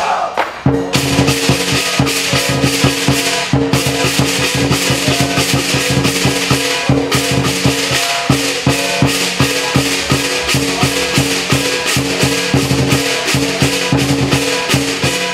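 Lion dance percussion: a big drum with clashing cymbals and gong played loud in a fast, steady rhythm. It breaks off briefly just after the start and then resumes.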